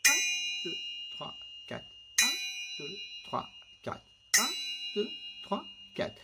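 A metal kitchen pot lid struck with a whisk three times, about two seconds apart, each strike ringing on with a high metallic tone. Softer short sounds fall on the beats between the strikes, keeping a steady pulse.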